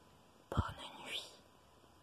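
A person whispering 'bonne nuit' once, briefly, starting about half a second in, with a low pop at the start of the words.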